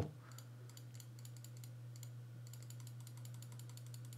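Faint, quick taps on a computer keyboard, several a second, coming thickest past the middle, over a low steady hum.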